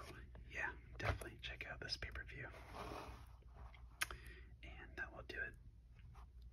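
Soft whispering mixed with the handling of a plastic DVD case as it is turned over, with a few sharp clicks from the case, two of them about a second and four seconds in.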